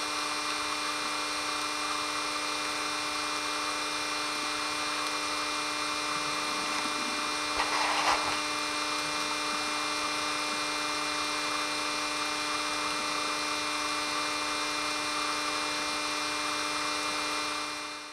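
Steady mechanical hum at a fixed pitch with many overtones, picked up underwater, with a brief noisy burst about eight seconds in.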